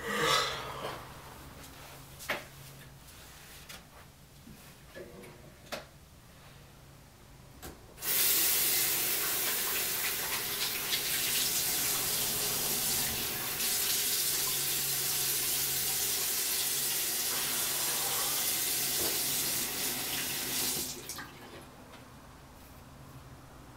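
Bathroom sink tap running, water splashing into the basin as hands are washed under it. It is turned on about a third of the way in and shut off shortly before the end, after a few faint knocks in the quieter opening seconds.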